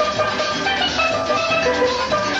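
Steel pan music: quick runs of short pitched notes struck with sticks over a drum beat.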